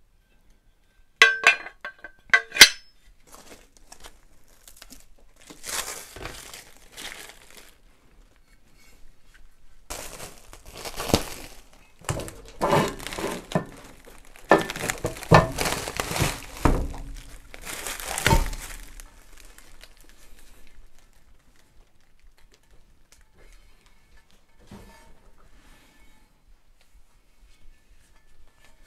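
Steel frame parts of a shop press clinking together a few times with a short metallic ring, followed by long stretches of plastic packing film crinkling and rustling as parts are pulled out of their wrapping.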